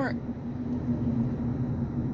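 Road and engine noise inside a moving car's cabin: a steady low rumble with a faint, even hum above it.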